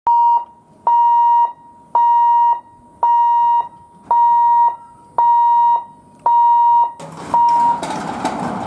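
Electric level-crossing gate warning alarm sounding while the boom barrier lowers: a loud, steady single-tone beep repeated about once a second, eight times. Near the end a broad rush of noise rises under the last beep.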